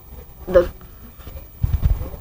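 Low, uneven rumbling thumps of handling noise on a handheld phone's microphone near the end, as the phone is moved in close.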